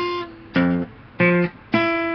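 Acoustic guitar playing single plucked notes one after another, about half a second apart, stepping up from low to higher: octaves of one note across the fretboard. The last note is the loudest and rings on.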